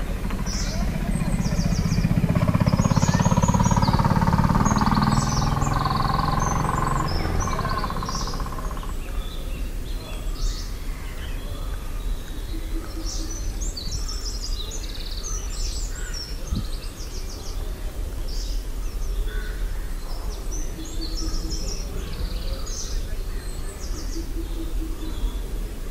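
Small birds chirping and calling throughout in a lively outdoor chorus. Over the first eight seconds or so an engine hum swells and fades as a motor vehicle passes.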